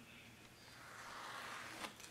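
Soaked transfer paper being peeled off a t-shirt by hand: a faint, soft tearing rustle that builds through the second half, with a small click near the end.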